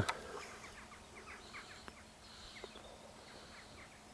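Faint outdoor ambience with short, repeated bird chirps, thickest in the first couple of seconds.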